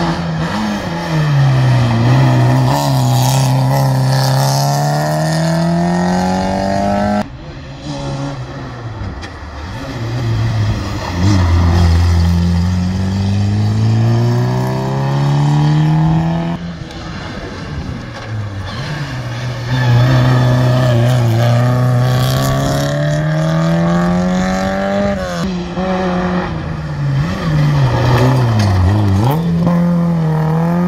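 Rally car engines taken hard through a tight hairpin, several cars one after another with abrupt cuts between them: each engine's pitch drops as the car brakes and changes down for the bend, then climbs as it accelerates out. The last car slides through the bend with its tyres smoking.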